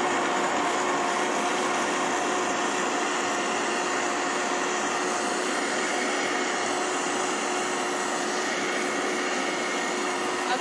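Countertop blender running steadily with a constant motor hum, blending water, raw cashews and seasonings into a smooth cream.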